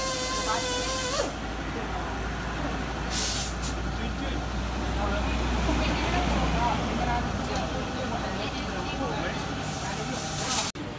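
Workshop background noise: a steady low hum with faint voices, broken by two short bursts of hiss, one about three seconds in and one at the end. A singing voice or music is heard for about the first second.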